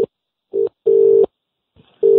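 Telephone line tone, a steady low beep broken into short pulses: two brief beeps about half a second and a second in, and the tone starting again at the end. It is the kind of tone heard on a line once the other end has hung up.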